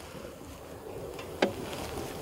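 Steady low rumble of wind on the microphone, with one short sharp click about one and a half seconds in.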